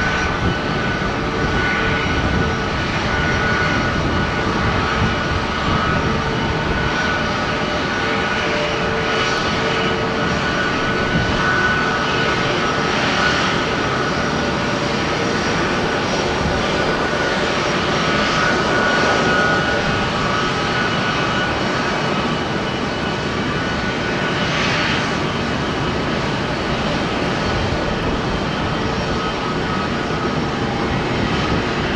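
Jet engines of taxiing airliners, among them a Frontier Airbus A321neo's Pratt & Whitney geared turbofans, running at taxi power: a steady rumble and whine with a few held tones, swelling slightly now and then.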